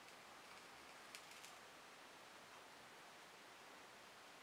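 Near silence: faint room hiss, with two or three faint ticks a little over a second in.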